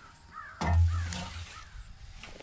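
A scythe blade swishing through dense ragweed and grass in one stroke a little past half a second in. Over it, a bird calls several times in quick, short, arched notes.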